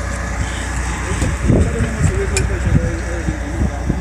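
A steady low rumble under the voices of several people talking.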